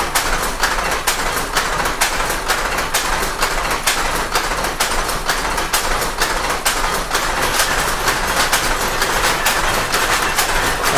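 A row of belt-driven cotton power looms running: a very noisy, steady mechanical clatter of sharp clacks, several a second, overlapping from the many machines.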